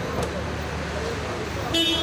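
Street traffic noise with low voices, and a short car-horn beep near the end.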